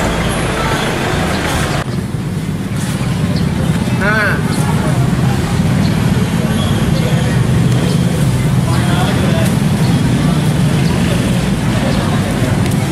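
A motor vehicle engine runs steadily in busy street traffic, with people talking in the background.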